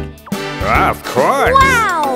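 A cartoon character's voice sings a line of a children's song over backing music, the voice swooping up and down in pitch.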